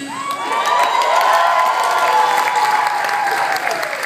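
A small group cheering and clapping, with a long held shout that slowly falls in pitch.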